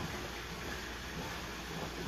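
Sliced portobello mushrooms and bell peppers frying in a skillet: a steady sizzling hiss as they are stirred with a spatula.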